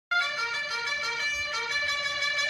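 A trumpet playing a quick run of bright notes, starting suddenly.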